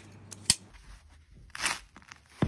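Handling sounds of gloved hands working a slimy green leaf: one sharp click about half a second in, then a short crackly scrape near the end.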